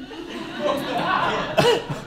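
People laughing, a breathy laugh with a brief voiced laugh near the end.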